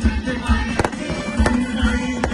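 Fireworks going off in sharp cracks, three of them in quick succession, over loud music with a steady beat.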